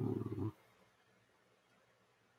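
The end of a man's long, steady-pitched hesitation 'ah', which stops about half a second in.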